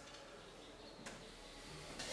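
Quiet room tone with two faint clicks, one right at the start and one about a second in.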